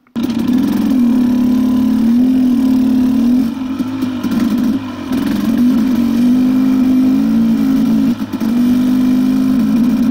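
KTM dirt bike engine running under way, its note rising and falling with the throttle. It eases off for a moment about four seconds in and again about eight seconds in.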